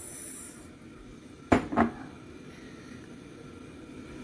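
Two quick knocks against a cooking pot, about a third of a second apart, as onions are added to it, against low room tone.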